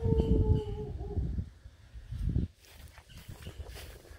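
Wind rumble on the microphone, loudest in the first second and a half, with a steady held tone over it that falls slightly and stops about a second in. Then faint outdoor background with one more short rumble in the middle.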